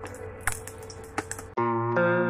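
Oil sizzling quietly in a nonstick frying pan with a few sharp clicks of a spatula against the pan as patties are turned. About a second and a half in, guitar music cuts in abruptly and takes over.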